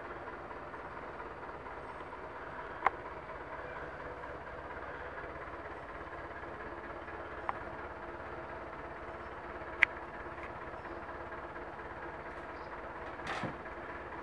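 Quiet steady background hum, broken by three short sharp clicks about three, seven and a half, and ten seconds in, and a brief rustle near the end.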